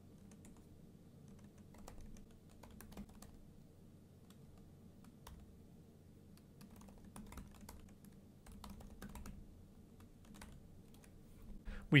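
Faint typing on a computer keyboard: scattered keystroke clicks in short runs, over a low steady hum.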